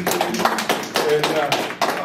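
Applause from a small group: irregular hand claps from several people, with a man speaking over them.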